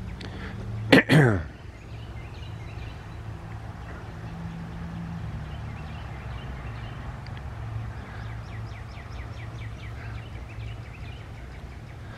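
Outdoor ambience with a steady low hum. A short, loud vocal sound comes about a second in, and a bird's rapid series of short high notes follows in the second half.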